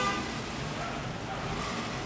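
Steady background city street noise with distant road traffic.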